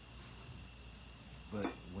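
Faint room tone with a steady high-pitched whine underneath; a man starts to speak near the end.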